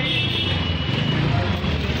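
Busy street noise from a narrow market lane: a motor scooter's small engine running close by, with a thin high tone during the first second or so.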